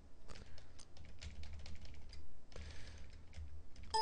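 Computer keyboard keys clicking in short irregular bursts of keystrokes.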